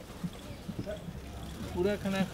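Soft low knocks at irregular intervals, and a high-pitched voice starting near the end.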